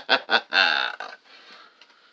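A man laughing in quick, short voiced pulses, ending in a longer breathy laugh about half a second in, then fading to a faint breath.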